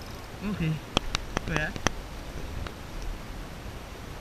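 Fishing rod and reel being worked while fighting a hooked fish: a quick run of five or six sharp clicks about a second in, and one fainter click later, over a steady hiss of wind and sea.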